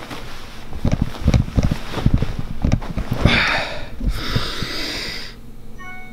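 Handling thumps and the rustle of a pillow and bedding as a handheld camera is moved about. Then a person breathes out loudly twice: a short breath about three seconds in, and a longer exhale about a second later.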